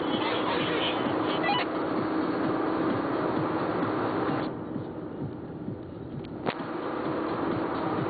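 Steady road and engine noise inside a car's cabin at highway speed. The noise falls off and goes duller for about two seconds past the middle, and a single click is heard near the end of that dip.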